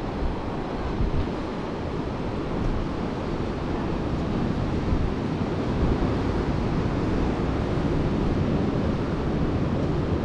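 Steady rushing noise of ocean surf washing onto the beach, mixed with wind buffeting the microphone in low, uneven gusts.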